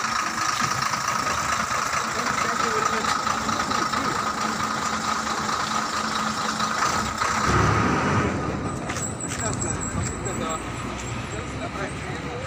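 Engine of a heavy road vehicle, a bus or lorry, idling with a steady high whine over its running, and voices around it. About seven and a half seconds in a louder low rumble rises and then fades over a couple of seconds.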